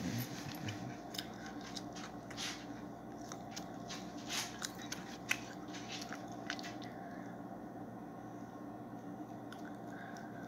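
Steady drone of a Boeing 737's cabin and engines in flight, with irregular crackling clicks over its first seven seconds that then stop, leaving the drone alone.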